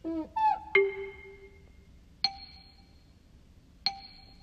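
Sparse playful music of soft bell-like chime notes. It opens with a short sliding, pitch-bending effect, then single dings sound about a second and a half apart, each ringing away.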